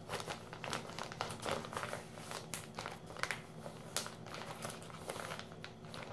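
Plastic zip-lock bag crinkling and crackling irregularly as it is handled and sealed shut.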